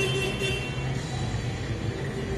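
Steady low rumble of a running engine, with a faint higher tone in about the first second.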